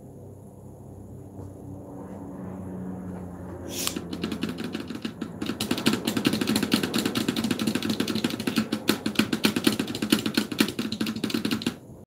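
Rapid, dense clicking like fast typing on a mechanical keyboard with round typewriter-style keys. It starts about four seconds in and grows louder, and before it the sound is quiet.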